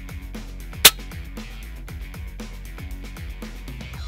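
Background music with a steady beat; about a second in, a single sharp crack from a PCP air rifle being fired.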